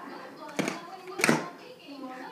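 Two sharp smacks about two-thirds of a second apart, the second one louder and followed by a brief voice.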